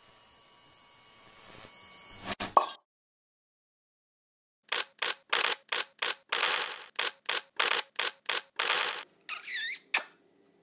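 Logo-sting sound effects: after a faint hiss, two sharp clicks and a pause of about two seconds, a fast, uneven run of about a dozen short, bright clicking bursts, then a brief swooping whistle-like glide near the end.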